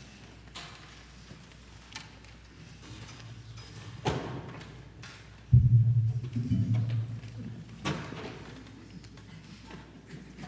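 Light knocks and shuffling on a concert stage, then a loud, heavy thud about five and a half seconds in, followed by a low boom that lingers for a second or so and dies away.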